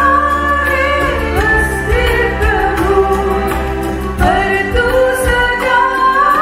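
A small choir singing a devotional song through loudspeakers, with a keyboard and guitar accompanying over a steady bass.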